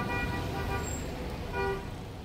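A vehicle horn tooting three short times, the last toot the loudest, over the steady rumble of street traffic.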